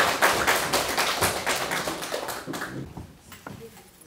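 A small audience clapping, the applause fading out about three seconds in.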